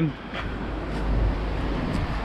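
Storm wind buffeting the camera microphone: a steady low rumble with a hiss over it.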